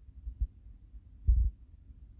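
Low, muffled thumps on a handheld phone's microphone, one faint and one stronger about a second later, over a low rumble: handling noise from the phone.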